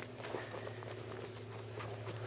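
Footsteps on a dry, stony dirt trail climbing uphill: a run of irregular, crunching steps over a steady low hum.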